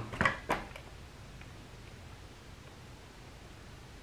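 A few faint clicks in the first half second as the controls of a FrSky Tandem X20S RC transmitter are handled, then quiet room tone.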